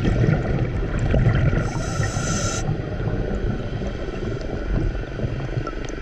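Scuba diver breathing through a regulator, recorded underwater: a hiss of inhalation lasting about a second, starting about one and a half seconds in, over the low rumble of exhaled bubbles.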